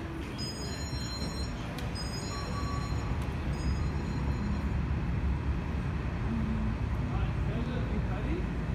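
Steady low rumble of buses and trains in a transit station, a little louder after about three seconds. A few brief high-pitched tones sound in the first three seconds.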